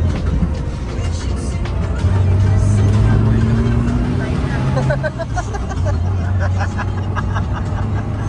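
A Lada car's engine and road noise heard from inside the cabin while driving: a steady low hum that grows louder a couple of seconds in, its tone rising slightly, then eases off about five seconds in.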